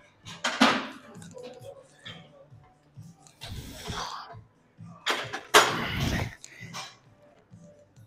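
Heavy breaths in time with pec-deck fly reps: three loud rushes of breath about two to three seconds apart, over background music.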